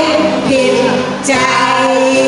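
Women singing into microphones with a live band accompanying them, long held notes, a new phrase beginning a little past a second in.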